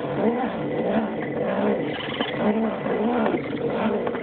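Whine of an Axial SCX10 RC crawler's electric motor and geartrain, its pitch rising and falling over and over as the throttle is worked while the truck crawls.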